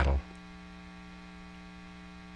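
Steady low electrical mains hum from the recording, a few steady tones with no change; a man's spoken word trails off just at the start.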